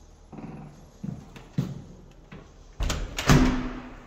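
Apartment entry door being unlocked and opened: a few sharp clicks of the lock and latch, then a louder rush with a thud as the door swings open near the end.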